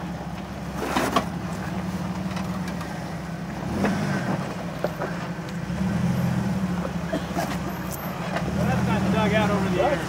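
Jeep Wrangler engine running steadily at low revs while crawling a rocky trail, the hum rising a little about six seconds in. Two sharp knocks sound around one and four seconds in.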